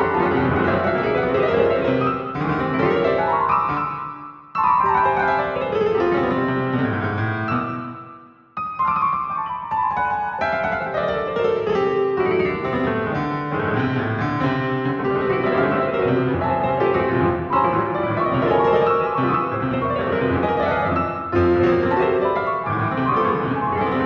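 Piano notes set off by a timsort sorting algorithm, a fast dense stream of notes in sweeping, mostly falling runs. The sound fades and breaks off twice, about four and eight seconds in, then starts again at once.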